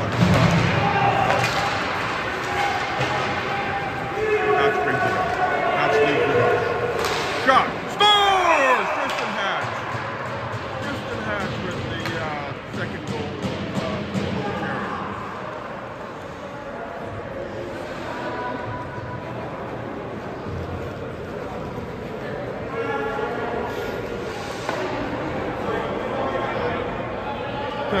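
Ice hockey rink sound: spectators' voices and shouts echoing in the arena, with sharp knocks of puck and sticks against the boards about seven to eight seconds in, followed by a brief falling tone.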